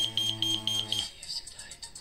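Philips-designed Airpage pager beeping as it powers up on fresh batteries: a quick run of about six short, high beeps at one pitch over the first second, with a low steady buzz under them. The pager is coming to life and working.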